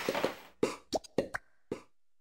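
Music fading out, then about six short, sharp knocks spaced unevenly over about a second.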